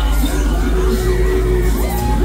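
Loud ride music with a heavy, steady bass from a funfair ride's sound system, with riders' screams and whoops rising and falling over it.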